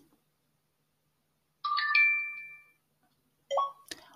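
A phone app's voice-input chime: three quick tones stepping upward, signalling that the microphone has started listening for speech. A short blip follows near the end.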